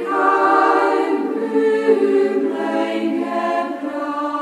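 Music of choir-like voices singing long held chords, the harmony shifting every second or so.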